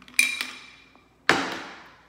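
Copper cocktail shaker clinking: a sharp, ringing metallic clink followed by a lighter tap, then a louder knock a little over a second in as the shaker is set down on a wooden table.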